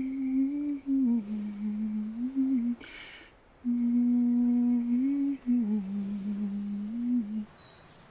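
A woman humming a slow tune in two long held phrases, each stepping down to a lower note, with a short pause between them.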